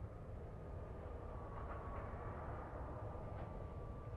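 Faint low rumble with a thin, steady high tone that wavers slightly in pitch.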